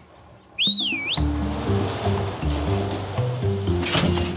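Cartoon sound effect: a short, wavering whistle-like glide about half a second in, followed by an upbeat background music cue with a bass line and steady ticking percussion.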